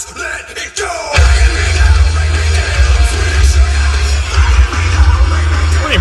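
Hard rock music playing through a car stereo with a Cerwin-Vega VPAS10 10-inch powered subwoofer switched on, heard inside the car's cabin; heavy deep bass comes in strongly about a second in under the guitars and yelled vocals.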